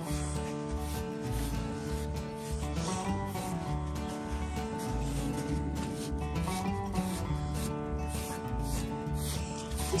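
Scratchy, repeated rubbing strokes of a coiled-metal spring curry comb worked through a foal's thick, mud-caked coat to break up caked mud. Background music with a steady bass beat plays throughout.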